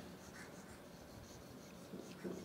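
Faint scratching of a stylus on a digital pen display as a thick arrow is drawn.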